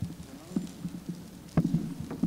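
A few scattered knocks and thumps, the loudest cluster near the end, over a faint steady low hum.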